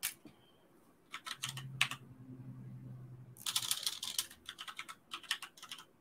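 Typing on a computer keyboard: irregular bursts of quick keystrokes, densest a little past the middle.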